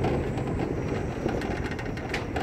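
Pickup truck driving on a rough dirt road, heard from the open load bed: steady engine and road noise, with the metal cage frame rattling in short clicks.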